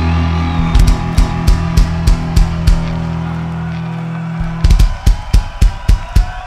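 Rock band's held electric guitar and bass chord ringing out under evenly spaced drum kit hits, about three a second. About two-thirds of the way through, the chord stops and the drum kit carries on alone, its bass drum hits coming a little faster.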